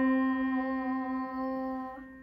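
Digital piano sounding a single note C, struck just before and held down so it rings on and slowly fades away. It is played to check the pitch a child has just sung.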